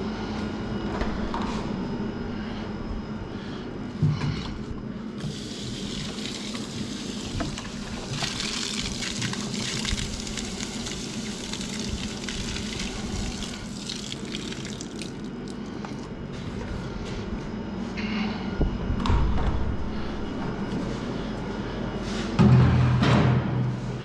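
About six litres of condensate water poured from a dehumidifier's collection tank, gushing out for roughly ten seconds in the middle, over a steady low hum. A heavier thump comes near the end.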